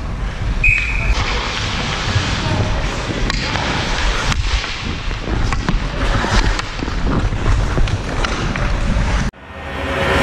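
Ice skate blades scraping and carving on the ice, with wind rushing over a helmet-mounted action camera's microphone and scattered clicks of a hockey stick on the puck and ice. The sound breaks off abruptly near the end.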